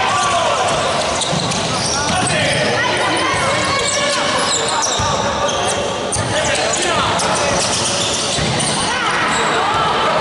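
Basketball being dribbled on a hardwood court, with players' and spectators' voices calling out and echoing in a large gym.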